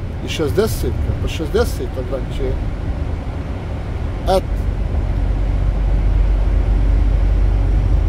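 Steady low rumble of a lorry's diesel engine and road noise heard from inside the cab while driving through a tunnel, growing louder about halfway through. A man says a few words in the first couple of seconds.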